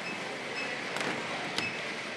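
Steady background noise of a large hall where workers are handling fabric ballot bags, with two light clicks about a second and a second and a half in.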